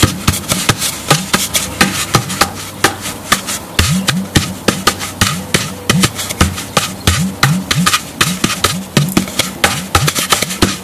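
Hand-played gourd udu: a fast, steady rhythm of slaps on the gourd's body, with a deep hollow bass tone from the side hole that bends upward in pitch on many strokes from about four seconds in.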